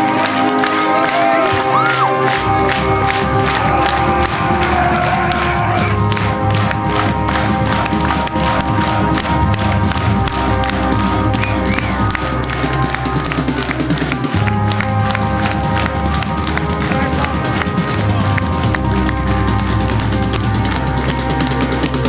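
Metalcore band playing live at full volume, recorded on a camera's microphone: electric guitars and bass over a low bass line that shifts to a new note every few seconds, with fast, dense rhythmic playing throughout.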